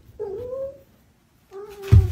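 A cat gives two short meowing cries during a play-fight, the first rising then held, the second a little lower. A loud thump comes near the end as the cats tumble onto the floor.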